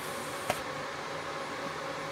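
Steady whir of the cooling fans in a rack of running Dell PowerEdge servers, with a faint steady tone and a single short click about half a second in.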